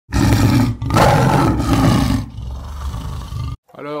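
Tiger roaring: two loud roars in the first two seconds, then a quieter tail that stops abruptly about three and a half seconds in.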